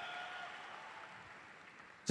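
Audience applause dying away, fading steadily to near quiet.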